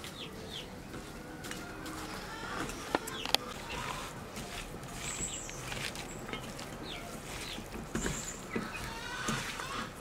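Chickens clucking now and then in the background, over soft sounds of masala-coated cauliflower and mussels being mixed by hand in a steel bowl. Two sharp clicks about three seconds in.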